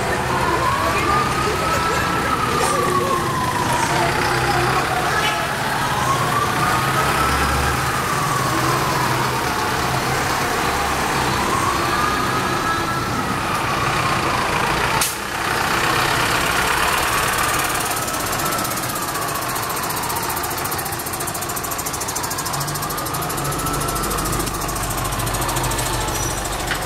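A siren in a slow wail, rising and falling about every four and a half seconds, over crowd voices and the low rumble of bus engines, with a single sharp click about fifteen seconds in.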